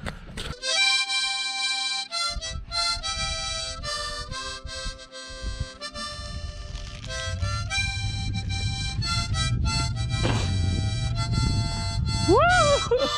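Harmonica playing a short melody of stepping notes and chords, with wind rumbling on the microphone in the second half.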